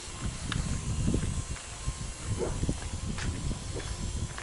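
Wind and handling noise rumbling on a handheld camera's microphone outdoors, with a few faint clicks.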